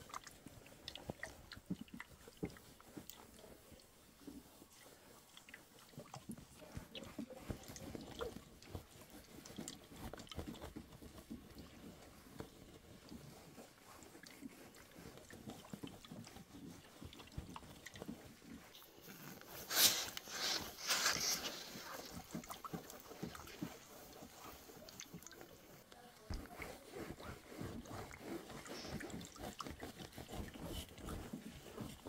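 SilverCrest steam iron being pushed back and forth over denim, with faint rustling and small knocks as it slides and is set down. About two-thirds of the way through come a few short, loud hisses, steam puffing from the iron.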